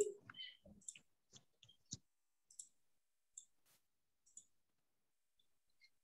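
Faint, irregular clicks from computer input: a quick cluster in the first two seconds, then single clicks about once a second, dying away after about four and a half seconds.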